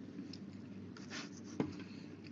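Faint scratchy rustling over the steady low hum of an open microphone, with one sharp click about a second and a half in.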